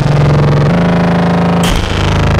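BugBrand modular synthesizer playing a loud, buzzy drone rich in overtones; its pitch steps up less than a second in, and a short noisy swish near the end leads into a new tone.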